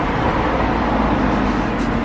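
Steady street traffic noise, with the low, even hum of motor vehicles running nearby.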